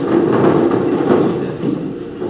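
Plastic draw balls being stirred by hand in a clear draw box, a continuous loud clattering rattle.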